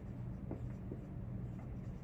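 Dry-erase marker being written across a whiteboard, a few short faint strokes as letters are formed, over a steady low room hum.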